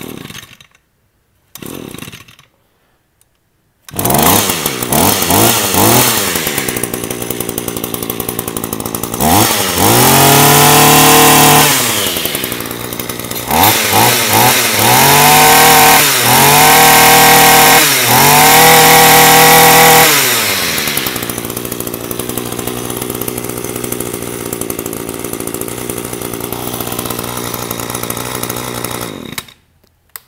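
A 24 cc Echo two-stroke brush cutter is pull-started: two short pulls of the cord, then it catches about four seconds in and idles. Its throttle trigger is squeezed repeatedly, giving several long revs and a few quick blips, before it drops back to a smooth idle and is shut off near the end.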